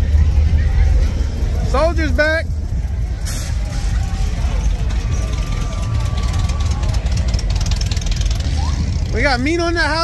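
Low, steady rumble of cruising cars' engines as they roll slowly past at the curb, loudest at the start, with brief voices about two seconds in and near the end.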